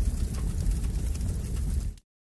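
Logo transition sound effect: a steady low noise with a light crackle over it, cutting off suddenly at the end.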